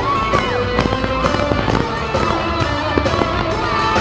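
Live rock band playing loud, with a steady drum beat and melody lines gliding over it, recorded from among the crowd.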